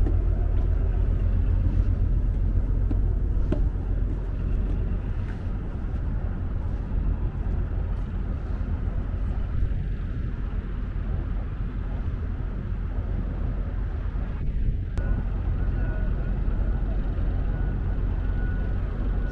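Steady low rumble of a large car ferry's machinery, running while the ship is moored, heard from its open deck. A faint high tone sounds on and off near the end.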